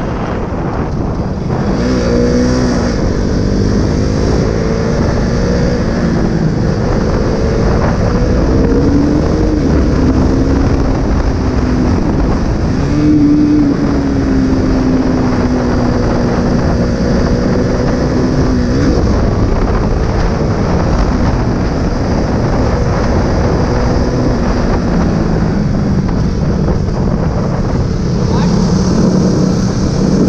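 Single-cylinder KTM RC sport bike engine pulling under way, its pitch rising and falling with throttle and gear changes and dropping off about 19 seconds in, under heavy wind noise on the microphone.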